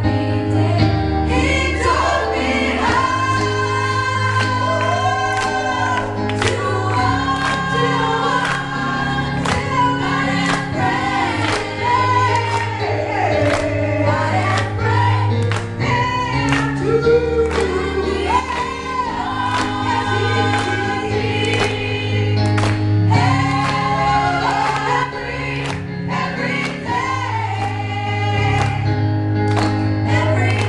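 Live gospel song sung by a group of women, a lead voice over backing harmonies, with a band of keyboard, acoustic guitar and drums keeping a steady beat.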